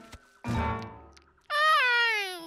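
A cartoon monkey character's wordless vocal cry, loud and falling steadily in pitch like an indignant whine, about a second and a half in. Before it, a short sound starts suddenly about half a second in and fades away.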